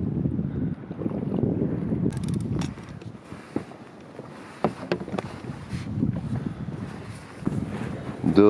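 Wind buffeting the microphone and water moving around a small boat on open sea: a low rumble, louder for the first two to three seconds and quieter after, with a few light knocks.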